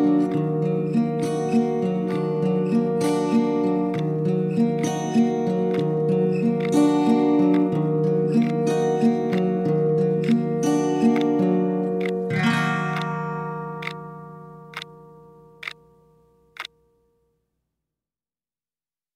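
Instrumental ending of a song on strummed acoustic guitar with a steady rhythm. About twelve seconds in, a last chord rings and fades away, with four sharp clicks about a second apart as it dies out.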